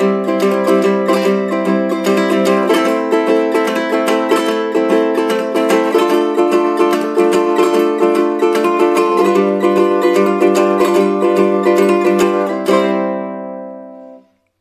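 Low-G ukulele strummed with fingerpicks through a C, Am, Dm, G7 progression: steady down-up strokes with quick three-note triplet and drag figures mixed in, the chord changing about every three seconds. The strumming stops shortly before the end and the last chord rings out and fades.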